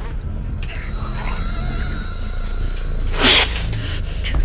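Dark, droning horror-film score with a steady low rumble. About three seconds in it is broken by a brief, harsh, breathy vocal outburst.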